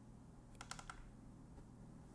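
Faint, quick clicks from the M4 Mac mini's power button being pressed twice in quick succession, a short cluster about half a second in, otherwise near silence.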